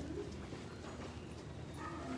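Dogs moving about, with scattered light clicks and scuffs of claws on a hard floor and a brief whine near the end.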